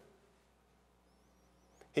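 Near silence: room tone in a pause between spoken sentences, with a faint high wavering whistle about a second in, a small click, and a man's voice starting again at the very end.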